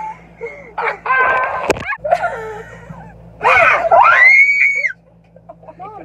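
Young women laughing hard in loud bursts, then, about three and a half seconds in, a loud high-pitched shriek that sweeps up and back down over about a second and a half.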